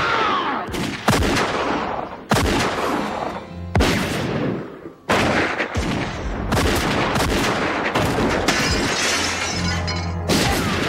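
Film soundtrack gunfight: a string of loud gunshots at uneven spacing, each with a long echoing tail, over a continuous music score, with glass shattering among the shots.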